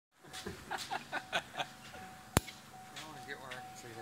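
Men's voices, with a single sharp click about two and a half seconds in and a faint steady high-pitched hum underneath.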